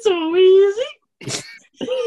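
A man's drawn-out, sung-out "a-a-a-ah" held for nearly a second, its pitch level and then rising at the end, like a playful hype wail; a short breathy puff follows, and another voiced sound starts near the end.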